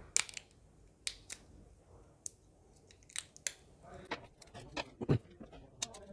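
Batteries being unwrapped by hand from their plastic packaging: irregular sharp crinkles and clicks of plastic, with a duller knock a little after five seconds.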